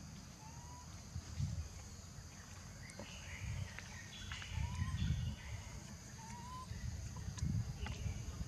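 Tropical forest ambience: a steady high drone of insects, with a few short rising chirps and irregular low rumbles scattered through it.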